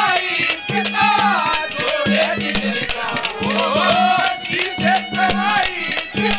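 Live Haryanvi ragni folk music: a gliding melodic line over a repeated low note, driven by quick, even hand-drum strokes with rattling percussion.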